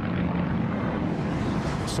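Propeller aircraft engine running steadily, a low, even hum with a noisy wash above it.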